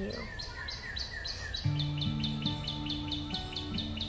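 A songbird calling a fast run of short, repeated descending chirps, about five a second. About one and a half seconds in, acoustic guitar music starts underneath with held notes.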